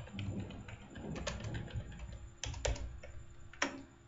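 Computer keyboard typing: a run of key clicks as a file name is typed, with a few sharper, louder clicks, the loudest a pair past the middle and a single one near the end.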